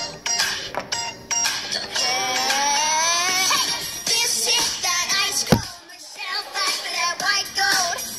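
A boy singing, with one long wavering held note a couple of seconds in. A sharp knock about five and a half seconds in is followed by a short lull before the singing picks up again.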